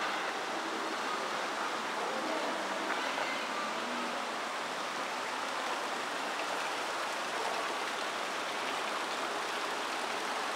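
Ornamental fountain water spouting from sculpted jets and splashing steadily into its basin.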